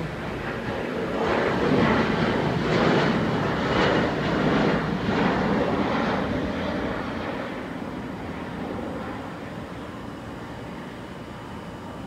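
Jet engine noise from a Southwest Airlines Boeing 737 arriving low overhead with its landing gear down. The noise swells within the first couple of seconds, peaks, then fades away over the second half as the jet passes.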